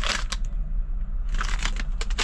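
Plastic candy bag crinkling as it is handled and turned over in the hands, in two short bouts, one at the start and one about a second and a half in.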